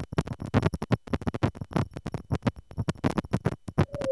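Crackly, irregular synthesized static from a VCV Rack software modular patch, the noise made by waveshaping with a ZZC FN-3. A steady mid-pitched tone comes in near the end.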